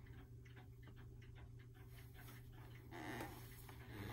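Old clock ticking faintly and evenly, about five ticks a second, with a brief soft rustle about three seconds in.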